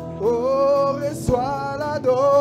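Gospel worship song performed by singers, holding long notes with a slight waver over a low accompaniment and a deep drum beat about once every one and a half seconds.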